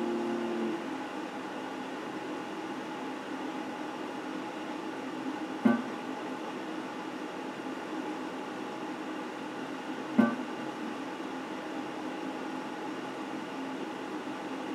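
Electric guitar chord ringing out and fading in the first second, then a steady amplified hiss and hum with a faint lingering tone. Two single soft plucked notes come through, about six and ten seconds in.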